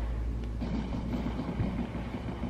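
A steady low rumble, with a faint rustle from about half a second in as a microfiber cloth is handled and rubbed across a glass tablet screen.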